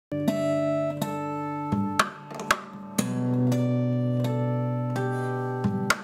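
Steel-string acoustic guitar played fingerstyle: long ringing chords and bass notes that change every second or so, cut by about six sharp percussive hits on the guitar.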